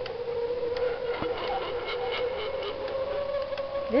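A steady, slightly wavering hum holds one pitch throughout, with faint ticks and one sharp click about a second in.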